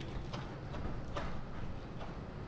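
Hoofbeats of a dressage horse moving across a sand arena, regular soft thuds less than a second apart.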